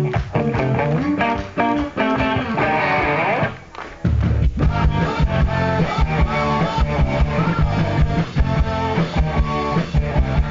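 Live indie rock band playing: electric guitars lead the opening seconds, swelling up to a brief break just before four seconds in. Then the full band comes in, with a much heavier low end of bass guitar and drums.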